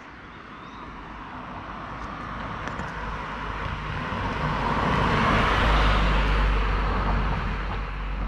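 A car driving past: its tyre and engine noise swells steadily as it approaches and is loudest about five to six seconds in.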